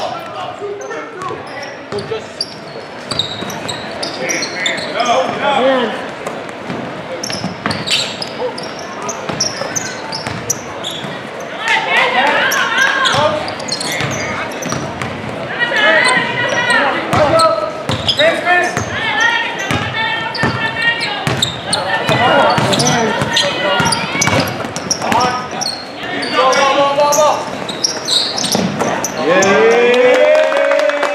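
Basketball bouncing on a hardwood gym floor, a run of sharp thumps, with voices calling and shouting in an echoing gymnasium, louder from the middle on.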